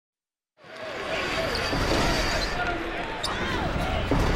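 Basketball arena sound: crowd noise with a ball bouncing on the court, fading in about half a second in.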